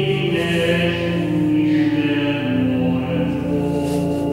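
Slow sung hymn in long held notes that step from pitch to pitch, over a steady sustained accompaniment.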